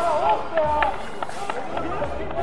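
Shouting voices of amateur football players, with a loud call in the first second, mixed with a few sharp knocks of the ball being kicked.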